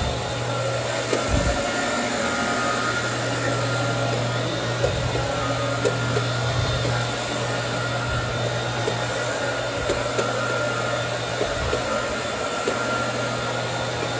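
Electric carpet-cleaning floor machine running steadily as its cleaning pad is worked across carpet, with a steady low hum and a few faint knocks.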